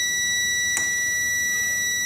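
Digital multimeter's continuity buzzer giving one steady, unbroken high-pitched beep as the probes find a closed, low-resistance path on the ECM circuit board. A faint click comes about three-quarters of a second in.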